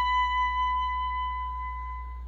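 Solo clarinet holding one long high note that slowly fades away, dying out near the end.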